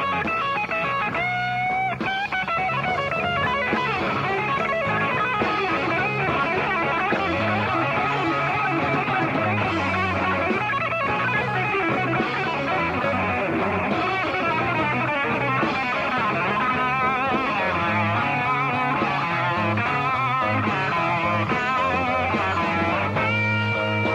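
Live rock band music led by electric guitar, its lead line bending and wavering in pitch over low bass notes.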